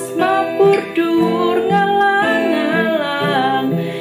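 A woman singing a Javanese song solo, accompanying herself on acoustic guitar.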